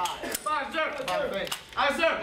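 Men's voices talking, with a sharp metallic click about a third of a second in from a rifle being handled at inspection.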